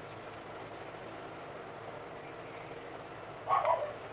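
A dog barks once near the end, a short bark over a low, steady background.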